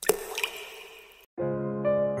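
A water-splash sound effect, a sudden splash with a short fading trail, then about a second and a half in sustained synthesized musical notes of a logo jingle begin.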